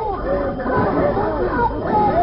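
Many voices chattering at once, with quick overlapping rising and falling calls, in a narrow-band old radio recording.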